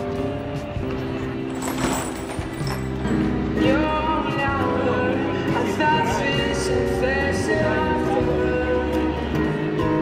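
Acoustic guitar playing, with a voice singing over it from about three and a half seconds in.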